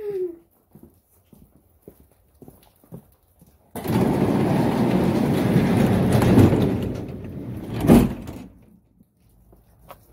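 Sectional garage door rolling shut: a rumble of about three seconds as it travels down its tracks, ending with a sharp thud as it meets the ground.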